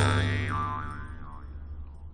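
Jaw harp (drymba) letting its last note ring out and fade away, a few wah-like sweeps moving through its overtones as it dies down.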